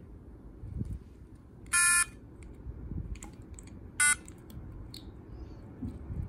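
Quarky robot's small speaker gives two electronic buzzer tones, a longer one about two seconds in and a short one about two seconds later. Each is set off by a finger press on its touch pins in music mode, where each pin plays a note. Faint taps of fingertips on the circuit board come between them.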